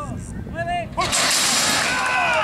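Metal horse-racing starting gate springing open about a second in: a sudden loud crash and rattle of the doors that runs on for about a second as the horses break out.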